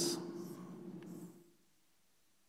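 Chalk scraping on a blackboard as a box is drawn around part of a diagram: a few faint scratchy strokes that stop about one and a half seconds in.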